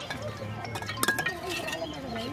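Fired clay bricks knocking and clinking as they are pried loose and lifted from a stack, with one sharp clink about a second in.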